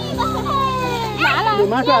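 Several children's voices chattering and calling out at once, over background music with sustained low notes.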